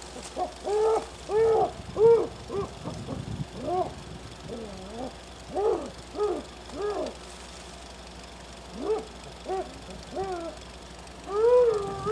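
High hooting calls: short notes that rise and fall, in quick irregular runs with pauses, ending in a long wavering wail.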